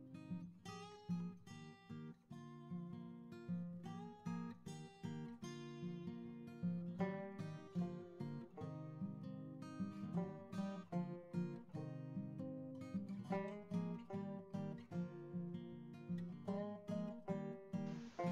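Quiet background music of a plucked acoustic guitar: a steady run of single picked notes and chords.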